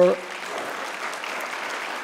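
Large seated audience applauding, steady clapping.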